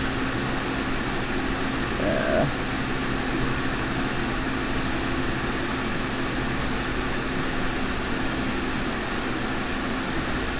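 Steady whirring fan noise with a constant low hum under it, and a brief murmur about two seconds in.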